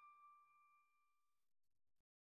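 Near silence, with the faint ringing tail of a single ding chime dying away over the first second and a half.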